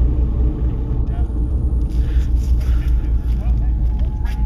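A steady low rumble with faint rustling above it.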